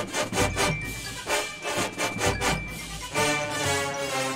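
Drum corps percussion section playing a fast, loud passage of sharp drum strokes with deep bass-drum hits underneath. Near the end the horn line comes in with sustained brass chords.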